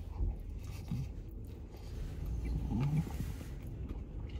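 A man biting into and chewing a burger with his mouth closed, with two short hums through a full mouth, about a second in and near three seconds. Under it runs a low steady rumble inside the vehicle cab.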